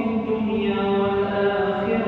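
A man's voice reciting the Quran aloud in melodic chant, leading the congregational prayer. He holds one long, drawn-out phrase whose pitch steps slowly up and down.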